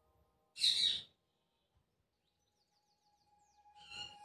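Mostly quiet, with a short hiss just under a second in. Near the middle comes a faint, quick run of about six short, high, falling chirps, and a faint steady tone follows toward the end.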